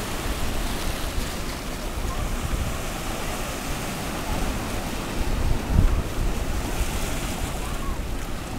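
Surf washing over rocks at the shoreline, with wind buffeting the microphone; a louder low gust of wind noise comes about six seconds in.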